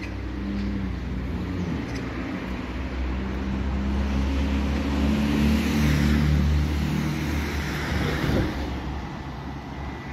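A motor vehicle on the street. Its engine hum and road noise grow louder to a peak about six seconds in, then fade, as it passes by.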